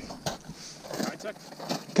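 Faint, distant talk with a light rustle and a few soft clicks between the words.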